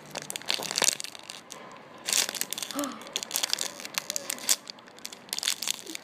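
Clear plastic packaging bag crinkling and crackling as fingers squeeze the soft squishy toys inside it, in uneven bursts that get busier about two seconds in.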